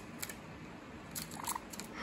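A few faint, sharp taps and paper crinkles as a Java sparrow pecks at and tugs a small paper origami crane on a wooden table, over a steady background hiss.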